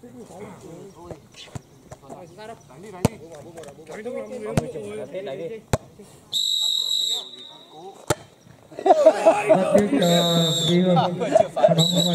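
Volleyball being struck by hand during a rally: a few sharp, separate slaps a second or so apart. A referee's whistle sounds once, short and steady, about six seconds in, and again near the end over loud talking voices.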